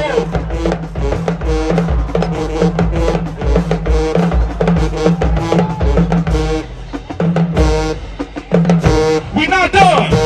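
Marching band playing: brass over a steady bass-drum and snare beat. The sound thins out for a couple of seconds near the end, then returns at full volume.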